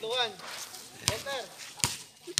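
Two sharp clicks about three-quarters of a second apart, with a voice talking briefly in between.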